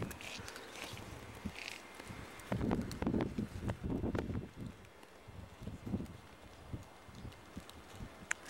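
Irregular footsteps and light knocks on a concrete floor, louder for a moment a few seconds in.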